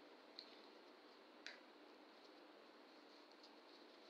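Near silence: faint hiss with two soft ticks, about half a second and a second and a half in, as a sheet of paper is folded by hand.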